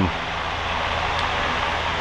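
A steady rushing noise with a faint low hum underneath, even throughout.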